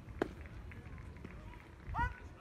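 A pitched baseball landing in the catcher's mitt with a single sharp pop, then a short rising voice call near the end.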